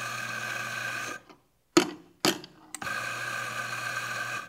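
Commercial espresso grinder's motor running as it grinds coffee into a portafilter, stopping about a second in. Two sharp knocks follow as the portafilter is tapped to settle the grounds halfway through the dose, then the grinder starts again.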